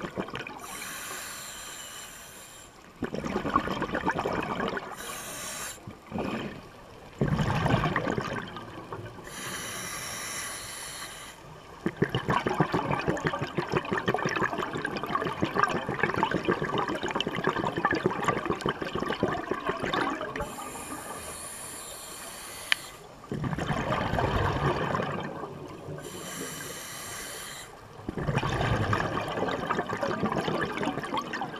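A scuba diver breathing through a demand regulator, heard from an underwater camera housing. Hissing inhalations alternate with noisy gushes of exhaled bubbles, about five slow breaths in all.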